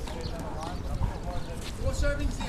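Indistinct voices over a low rumble of wind on the microphone, with a couple of light knocks in the second half.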